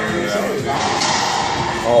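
Racquetball rally: the ball thudding off racquets and court walls, with spectators' voices and an "oh" near the end.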